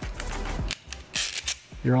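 Several sharp clicks and a short scrape from the LapLok laptop security lock as its pieces are pulled apart by hand to release the locking arm, over soft background music.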